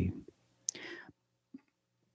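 A pause in speech: a faint mouth click, then a soft breathy murmur close to the microphone, and another small click.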